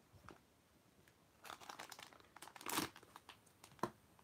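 Plastic foil blind-bag packaging crinkling faintly as it is handled, after a second or so of near quiet, with a louder rustle a little under three seconds in and a short sharp crinkle near the end.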